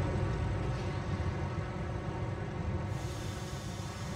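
Steady low rumble of industrial machinery at a copper smelter, with a faint hum over it, slowly fading.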